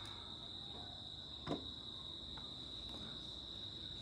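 Quiet room with a steady high-pitched whine running throughout, and a soft click about a second and a half in.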